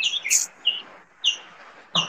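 Short, high bird-like chirps, about five in two seconds, over a steady hiss, picked up through an open microphone on an online call.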